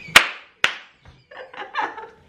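Two sharp hand claps about half a second apart, the first the louder, followed by laughter.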